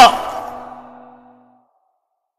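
The end of a voice-actor's loud, anguished cry, its tail dying away over about a second and a half into dead silence.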